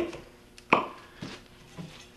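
Aerosol baking-spray can being uncapped: a single sharp plastic click about two-thirds of a second in as the cap comes off, then a couple of faint taps as it is handled.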